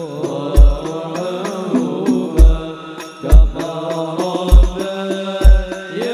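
Devotional sholawat music: voices chanting an Arabic melody over Indonesian hadrah/banjari frame-drum percussion. Light drum slaps run throughout, and a deep bass drum strikes five times at uneven intervals.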